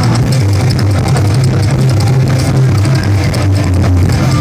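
Live psychobilly band playing an instrumental stretch, led by a slapped coffin-shaped upright bass whose low notes fill the bottom of the sound, with drums and cymbals ticking evenly over it. The sound is loud and muddy, as from a phone close to the stage.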